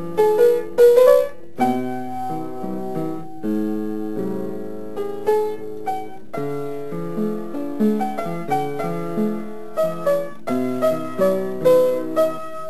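Solo piano playing a piece of music, with single notes and chords struck in quick succession and left to ring.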